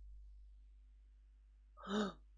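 A man's short, loud gasp of surprise near the end, after faint room tone.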